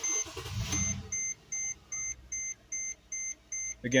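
A Mercedes-Benz GL450's V8 cranks briefly and starts in the first second, then idles low; this time the car powers up and starts normally. Over the idle, the dashboard warning chime sounds a rapid run of evenly spaced beeps.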